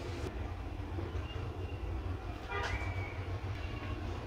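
A steady low rumble, with a short scraping rattle about two and a half seconds in.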